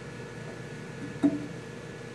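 Steady faint electrical hum and hiss, with one brief, short sound about a second in.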